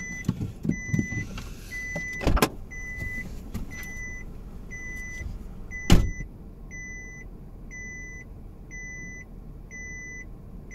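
Car's seatbelt warning chime beeping, a short steady tone repeating about every three-quarters of a second, because the driver's belt is unbuckled. A knock a little over two seconds in and a louder thump about six seconds in, the car door opening and shutting.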